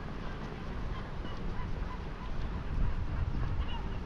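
Birds calling outdoors: many short, scattered calls, some of them honking, over a constant low rumble.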